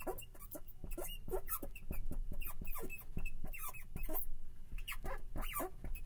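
A marker squeaking against the writing board in a quick run of short, high squeaks as words are written out.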